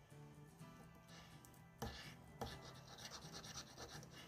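Faint scratching of a coin scraping the silver coating off a paper scratch card, with two sharper scrapes about two seconds in and quick repeated strokes after. Quiet background music runs underneath.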